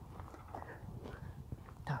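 Quiet footsteps of a person walking at an even pace on a dirt track.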